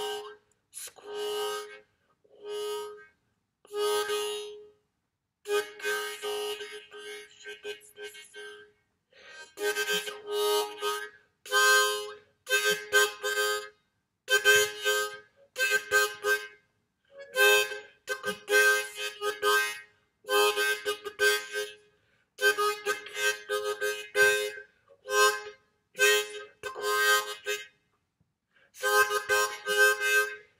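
Harmonica played in short, speech-like phrases: chords start and stop in the rhythm of talking, with brief silences between phrases, as the instrument stands in for a spoken lecture.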